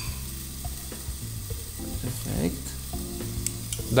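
Pork meatball wrapped in caul fat frying in a pan under a covering pan: a steady, fairly quiet sizzle over a low hum, with a few faint clicks.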